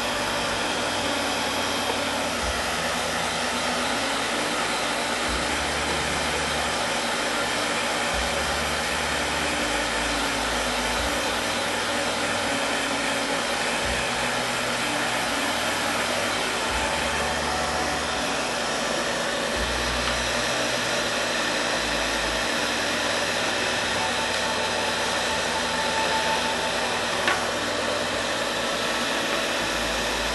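Handheld electric hot-air dryer blowing steadily over a freshly varnished decoupage shell pendant to dry the varnish coat.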